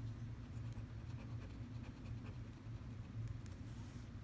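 Scratching the coating off a lottery scratch-off ticket: a quick run of short, faint scraping strokes, over a low steady hum.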